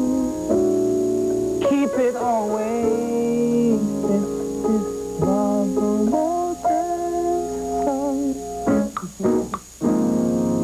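Piano played in a slow, improvised tune: held chords changing about once a second under a melody line that bends and wavers in pitch, with a few quick notes near the end.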